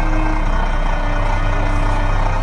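Bus engine idling with a steady low rumble.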